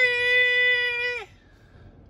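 A woman's voice drawing out a long sung "byeee", held on one high steady note for about a second and a half and dipping at the end.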